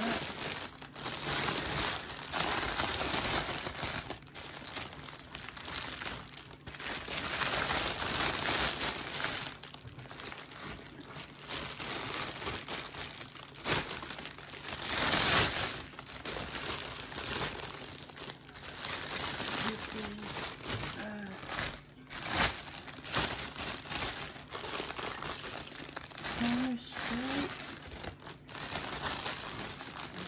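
Clear cellophane wrap crinkling and rustling in repeated bursts as it is handled and pulled up around a basket, loudest about halfway through.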